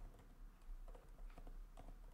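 Faint typing on a computer keyboard: a few soft, scattered keystrokes.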